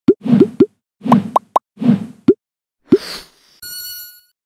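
Cartoon logo sound effects: a run of about eight quick rising 'bloop' pops over three seconds as the letters pop into place, then a short swish and a bright ringing tone near the end.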